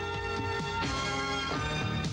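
Programme theme music: held, sustained chords, with a new chord coming in a little under a second in.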